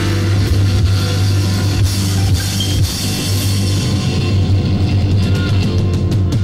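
Electric blues band playing an instrumental passage between vocal lines: electric guitar over a steady bass line and drum kit.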